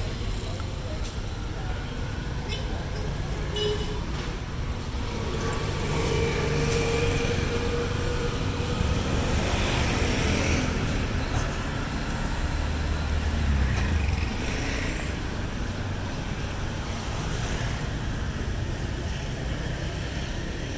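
City street traffic: vehicle engines and tyres passing on the road, swelling louder through the middle as vehicles pass close, then easing off.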